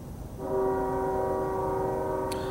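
Train horn sounding: a steady chord of several notes starts about half a second in and holds, over a low background rumble.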